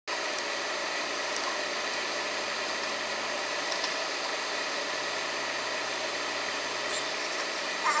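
Tractor engine running steadily, heard as a constant, even noise that does not change in speed or pitch.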